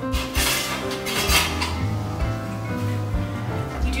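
A metal spoon clinking and scraping in a saucepan, a few clinks standing out, as the chocolate-fudge filling is stirred. Background music with sustained notes plays throughout.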